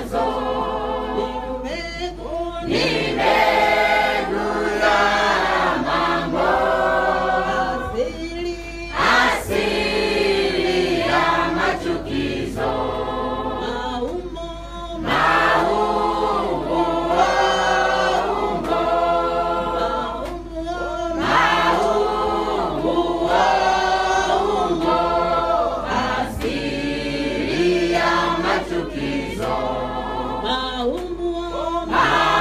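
A church congregation singing a worship song together in many voices.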